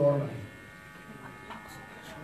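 A man's voice trails off about half a second in, leaving a faint, steady electrical buzz, a mains-type hum, during the pause in his speech.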